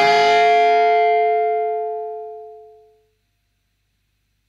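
Final electric guitar note of the song ringing out and fading steadily, dying away to silence about three seconds in.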